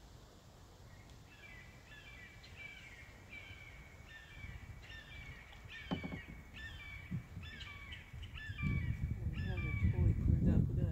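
A bird giving a long series of harsh repeated calls, a little under two a second, starting about a second in. A single knock comes near the middle, and a low rumble of handling or wind noise builds near the end.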